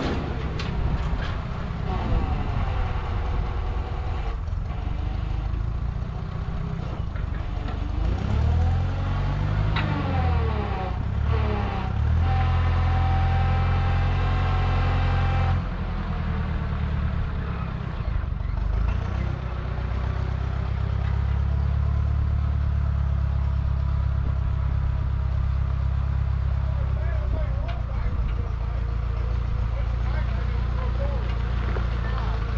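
An old forklift's engine running under load while it lifts and carries a truck. The engine revs up and down, then holds steady with a higher whine for a few seconds midway.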